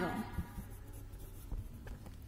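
Pen writing on workbook paper: faint scratching strokes with a few light ticks of the pen tip.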